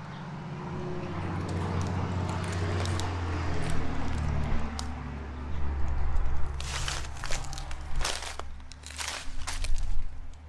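Footsteps crunching and crackling through dry fallen leaves, growing louder in the second half as several heavy crunching steps. A low rumble runs underneath.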